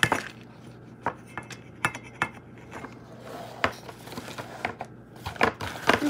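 Plastic spoon tapping and scraping against a bowl of dog food: irregular clicks and knocks, the loudest right at the start.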